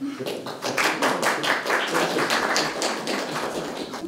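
A small audience clapping, many quick claps overlapping into steady applause.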